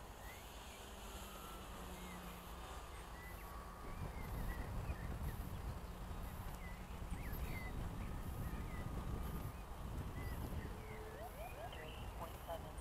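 Faint outdoor ambience of small birds chirping, short high chirps repeating every second or so, over a low rumble that grows louder about four seconds in.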